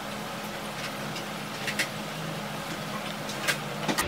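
Low, steady background hum with a few faint, brief clicks, a pair about two seconds in and more near the end.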